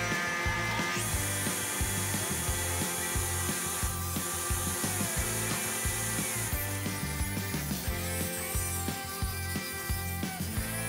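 Table saw cutting a wooden board, its cutting noise strongest from about a second in to past six seconds, under background music with a steady beat.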